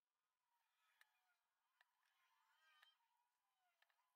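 Near silence: the sound track is essentially muted, with no audible sound.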